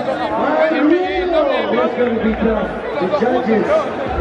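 Voices talking over a hall's PA, with crowd chatter.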